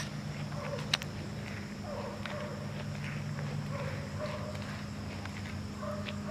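Soft, irregular footsteps on grass over a low steady hum, with a single sharp click about a second in.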